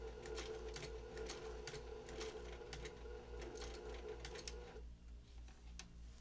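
Domestic sewing machine stitching slowly through a quilt's binding: a steady motor whir with the needle ticking as it goes, stopping a little before the end.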